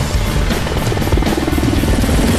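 Military helicopter flying low overhead, its rotor beating in a fast, even chop, over background music.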